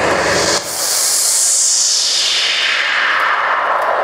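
A loud electronic hiss sweeping steadily down in pitch over about three seconds, starting after a brief break half a second in: a synthesized whoosh effect played through the field's sound system.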